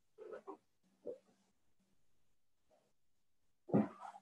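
A folded fabric blanket being handled and shifted: several short soft rustles, with a fuller thump-like rustle near the end as it is set down.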